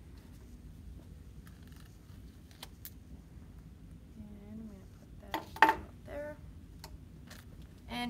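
Faint rustling and small clicks of a sterile instrument pouch being handled as surgical scissors are drawn out with metal forceps. About five and a half seconds in there is one sharp metallic click, the loudest sound, as the instruments knock together.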